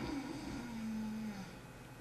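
A man snoring once: one long, low snore that fades out about a second and a half in.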